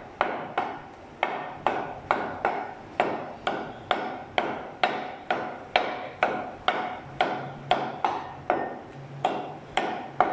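Butcher's cleaver chopping mutton into pieces on a wooden block in a steady rhythm, about two strokes a second, each with a short metallic ring.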